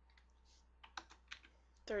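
Computer keyboard keystrokes: a short run of about half a dozen light key clicks as a number is typed into a spreadsheet-style cell and entered.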